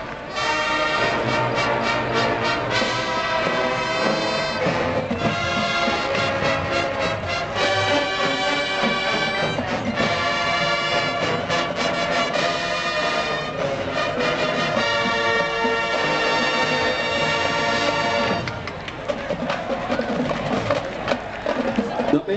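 Marching band playing live, a brass-led piece of sustained full chords that change every second or two. Near the end the band's sound falls quieter and thinner.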